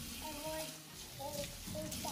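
A young child's voice, faint, making short held vocal tones, over the low hiss of a kitchen faucet running into a steel sink.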